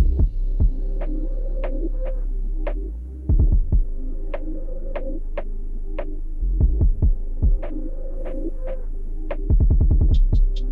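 Muffled underwater recording: a steady low hum with sharp clicks and ticks every half second or so, bunching into quick runs of clicks about three and a half seconds in, around seven seconds and near the end.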